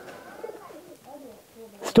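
Faint, low-pitched bird calls with a wavering, rising-and-falling pitch. A man's voice starts right at the end.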